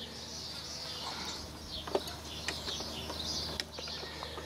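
Birds chirping in the background over a low steady hum, with a few light clicks about halfway through and again near the end.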